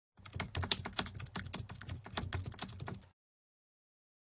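Rapid, uneven keyboard typing clicks lasting about three seconds, then cut off abruptly.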